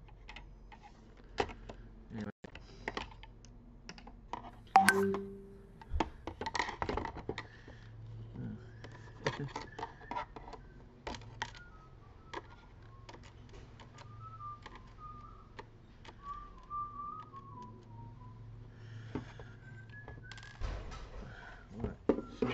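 Screwdriver working the screws of an all-in-one PC's metal stand, with scattered clicks and taps of metal on metal as the stand bracket is handled and lifted free. The loudest is a sharp knock about five seconds in.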